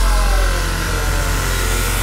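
Industrial drum & bass track in a beatless breakdown: a steady, deep, engine-like bass drone with a slowly falling tone and a hiss above it.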